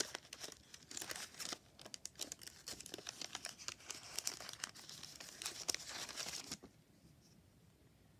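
Paper-and-foil wrapper and cardboard sleeve of a chocolate bar crinkling and tearing as the bar is unwrapped by hand, a dense crackly rustle that stops about six and a half seconds in.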